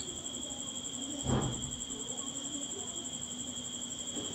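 A hand smoothing folded cotton print fabric on a table: a soft, brief rustle of cloth about a second in, over a faint steady high-pitched tone.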